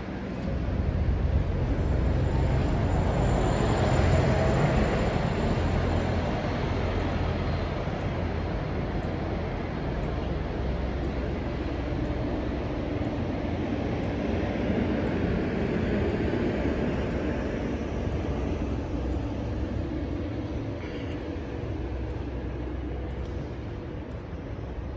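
City street traffic noise: a vehicle passing, loudest about four seconds in, then fading to a steady hum.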